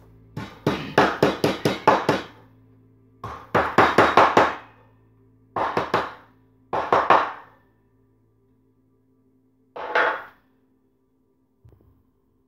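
Kitchen knife chopping rapidly on a wooden cutting board, mincing small pieces in several quick runs of about five strikes a second, with pauses between and a last short run near the end.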